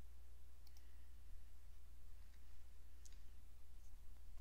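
A few faint computer mouse clicks over a steady low electrical hum and hiss.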